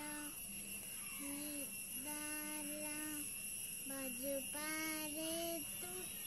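A child singing a slow melody in long, evenly held notes, the phrases broken by short pauses. A faint steady high-pitched whine runs underneath.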